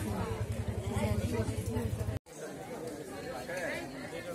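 Indistinct voices of several people talking at once, with a low steady hum under the first half that stops at an abrupt break about halfway through.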